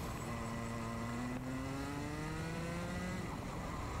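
Two-stroke Rotax kart engine heard from an onboard camera, its revs climbing steadily under acceleration for about three seconds, then dropping away sharply near the end as the throttle comes off.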